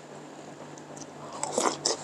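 Close-up eating sounds of a spoonful of rice in iced water being taken into the mouth: after a quiet start, a short cluster of loud mouth noises about one and a half seconds in as the bite is taken.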